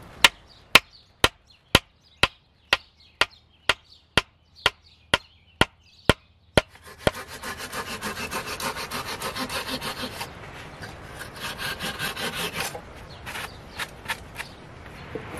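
Hand tools working wood: about fourteen sharp, evenly spaced knocks, roughly two a second, then a knife scraping the wood in fast, rasping strokes for about six seconds.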